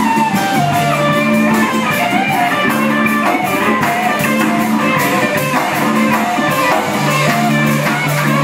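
Live rock band playing: electric guitar over held bass notes and a drum kit, with a lead line that bends and slides in pitch on top.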